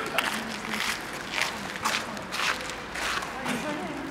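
Footsteps scuffing on cobblestones close by, a run of short irregular steps, with faint voices behind.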